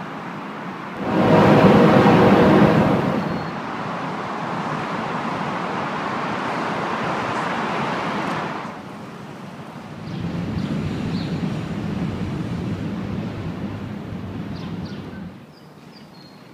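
Outdoor road traffic noise in several short stretches. It swells loudest about a second in for around two seconds, then settles to a steadier rush that dips briefly past the middle.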